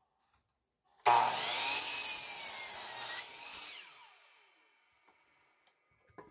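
DeWalt miter saw switched on about a second in and cutting through a wooden board, its motor whine sagging a little under the load. The saw is switched off after about two seconds and the blade winds down with a falling whine that fades out.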